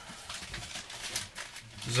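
Handling noise: light knocks and rustling as a plastic jug of liquid laundry soap is picked up and brought forward.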